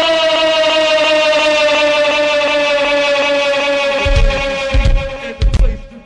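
Live go-go band recording: one long held note, steady and sinking slowly in pitch, then heavy low drum hits come in about four seconds in as the beat starts up near the end.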